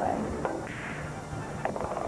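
Pool balls clicking. The cue strikes the cue ball with a sharp click about half a second in, and more clacks follow near the end as the balls hit each other, over background music.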